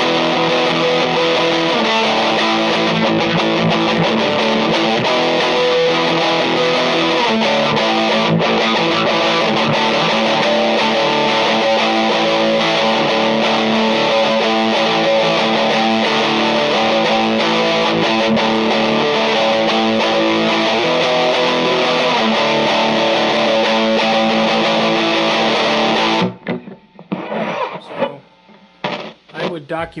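Electric guitar played through a Vox Lil' Night Train NT2H tube amp head with the gain turned up: loud, distorted chords strummed and held, stopping abruptly near the end. The amp is putting out full, clean-running output again after its controls and jacks were cleaned.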